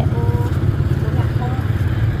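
Steady low rumble of street traffic on the road alongside, with faint voices in the background.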